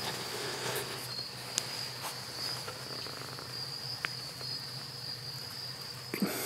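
Crickets trilling in one continuous high note, with a couple of faint clicks about a second and a half in and again near the middle.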